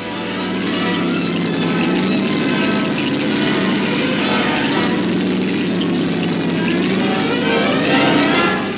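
Steady engine and track noise of tanks and other military vehicles moving through the streets. It fades in at the start and holds level throughout.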